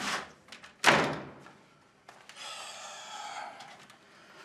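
A wooden door slammed shut, one loud bang about a second in after a lighter knock. A quieter, hissing sound lasting over a second follows.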